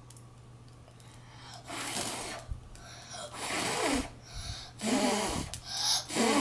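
A child blowing at birthday candles in a series of short breathy puffs, three or four of them about a second and a half apart.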